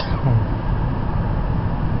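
Steady road and engine noise heard inside the cabin of a car at highway speed, with a brief click right at the start.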